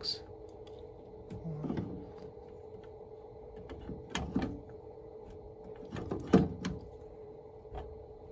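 Channel-lock pliers clicking and knocking against the fitting as the replacement air vent's threaded cap on a tankless water heater's circulator pump is tightened down. There are a few separate clicks, the sharpest about six seconds in, over a steady faint hum.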